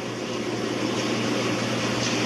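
Steady low hum with an even hiss, a machine-like background drone such as room air conditioning.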